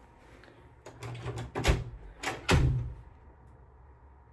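Interior door being handled and pulled shut: a few latch and handle clicks from about a second in, then two heavier thuds, after which it goes quiet.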